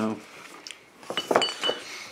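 Several quick clinks and knocks a little over a second in, with a short bright ring: glass bottles tapping together and against the table as they are handled.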